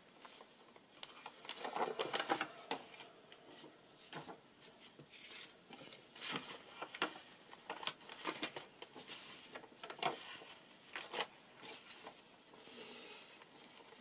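Loose sheets of paper handled by hand: pages rustling and sliding against one another as they are shuffled and stacked, with irregular soft taps and brushes against the table.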